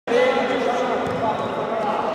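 Voices calling out in an echoing sports hall, with the futsal ball being played along the wooden floor.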